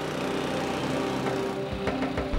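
Small petrol engine of a red four-wheeled motorised barrow running steadily as it drives over grass, growing a little louder. Music comes in near the end.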